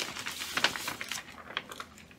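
Crinkling and rustling as a stitched piece in its wrapping is handled: a quick run of small irregular crackles that dies away about halfway through.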